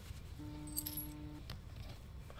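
A cell phone vibrating on a table: one steady buzz of about a second, starting about half a second in.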